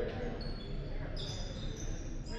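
Voices of players and spectators echoing in a gymnasium, with several short high sneaker squeaks on the hardwood court from about a second in.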